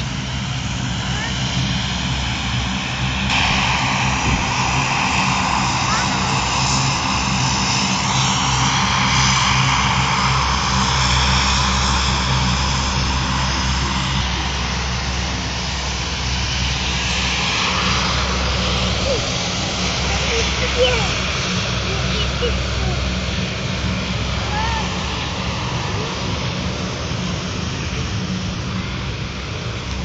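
Lockheed C-130 Hercules' four turboprop engines at take-off power: a steady roar over a low propeller drone, swelling over the first dozen seconds and then slowly easing.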